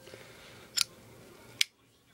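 Kershaw liner-lock folding knife being worked by hand: two sharp metallic clicks about a second apart as the blade is snapped open and shut.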